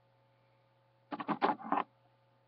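Scissors cutting string: a quick run of four or five sharp snips packed into under a second, starting about a second in.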